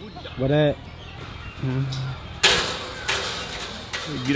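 Magpie goose honking twice: a short call that rises and falls in pitch, then a shorter flat one. About two and a half seconds in comes a sudden half-second burst of rushing noise.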